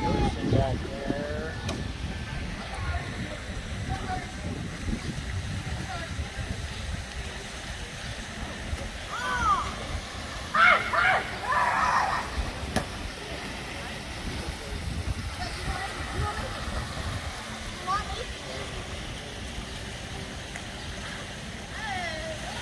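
Outdoor swimming-pool ambience: water splashing and sloshing as a child swims, over a steady low noise, with a few short voices about ten seconds in.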